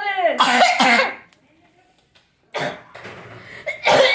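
A boy coughing into his elbow: a short cough about two and a half seconds in and a louder one near the end, after a voice trails off with a falling pitch in the first second.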